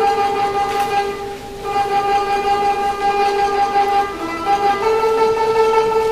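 Guzheng being played in a live performance, with long sustained notes sounding two at a time. The notes move to a new pair about four seconds in.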